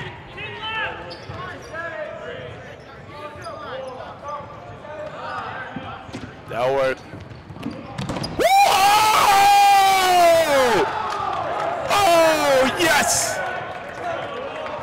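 Players shouting on a gym court during a dodgeball game, with dodgeballs bouncing on the hardwood floor. A long, loud yell starts about eight and a half seconds in and lasts about two seconds, followed by shorter yells.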